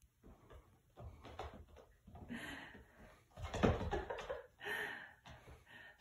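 Small hooves of young goat kids tapping and scuffing on a laminate wood floor, with a louder thump about halfway through as a kid jumps up onto a person lying on the floor.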